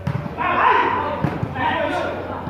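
A volleyball being struck by players' hands during a rally: a sharp smack at the start and a couple more hits about a second and a quarter in. Men's voices shout and call over the play.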